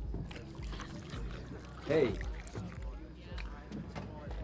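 A man's voice says a short "Hey" about halfway through, over a steady low background rumble and faint hiss of film room ambience.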